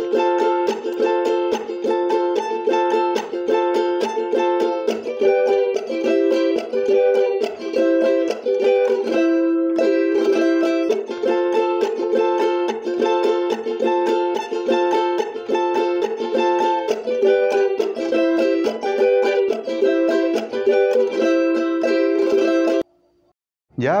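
Charango strummed in a steady huayno rasgueo, down-and-up strokes over the song's chords in A minor (A minor, F, G, C, E7). The strumming stops abruptly about a second before the end.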